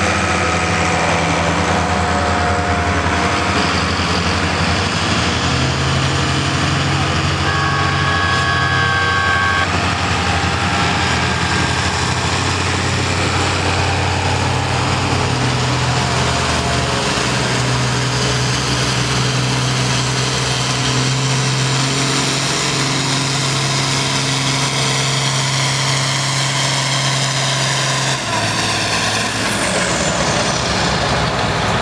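John Deere 4020 tractor's six-cylinder engine working hard under full load as it pulls a weight-transfer sled, its pitch rising a few seconds in and holding steady. The engine drops off near the end as the pull finishes. A short two-tone beep sounds about eight seconds in.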